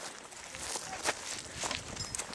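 Footsteps on a gravel-and-dirt path, a handful of separate steps.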